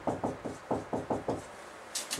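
Dry-erase marker writing on a whiteboard: a quick run of about ten short taps and strokes, stopping about one and a half seconds in.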